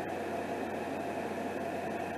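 Steady, even background hiss with a faint low hum, at a constant level.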